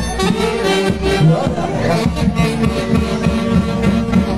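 Dance-band music with brass and a steady beat, played loud.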